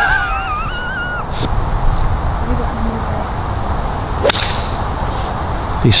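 Golf iron striking the ball off the tee: one sharp crack about four seconds in, over steady wind noise on the microphone.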